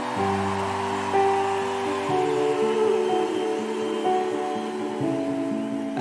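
Stage keyboard playing sustained chords, moving to a new chord every second or few: the instrumental intro of a song, with no drums.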